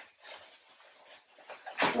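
Faint rustling and crinkling of a plastic mailer bag as an item is pulled out of it by hand.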